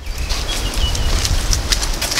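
Footsteps on a stone-paved lane with wind rumbling on the microphone, and a brief faint high chirp about half a second in.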